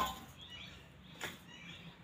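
Quiet, soft sounds of hands kneading wheat-flour dough in a steel plate, with one short knock about a second in.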